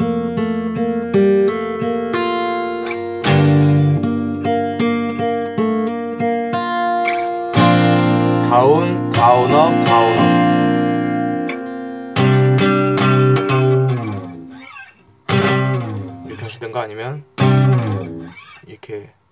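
Steel-string acoustic guitar in CGDGAD open tuning with a capo, played fingerstyle: ringing plucked chords and melody notes, with sharp struck chords every few seconds. The playing drops away briefly twice near the end.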